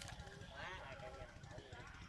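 Faint, distant talking over a steady low rumble.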